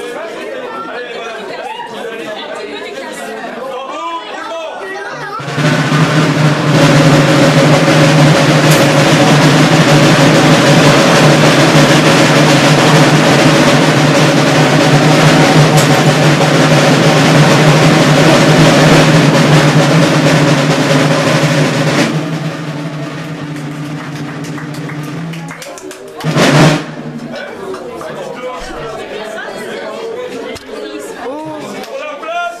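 A loud, sustained drum roll lasting about sixteen seconds, softening before it stops, then a single loud crash near the end as a drinking glass is smashed into the bin.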